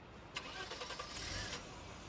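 A car stopped at the kerb with its engine running. About a third of a second in there is a clatter and rustle lasting roughly a second.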